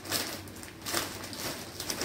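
Plastic snack bag crinkling in several short bursts as it is pulled open and handled.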